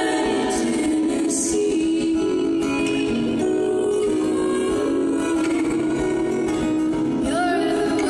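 Several women's voices singing long held notes in close harmony over an acoustic guitar, with a sliding vocal line just after the start and again about seven seconds in.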